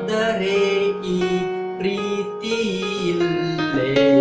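Electronic keyboard playing the song's melody line over a held E-flat minor chord, the melody notes changing about every half second above the sustained chord.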